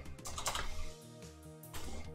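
Background music, with a burst of computer-keyboard clatter about half a second in and a shorter one near the end.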